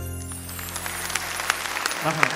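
The song's final held chord dies away while the audience starts to applaud, scattered claps at first, growing denser toward the end.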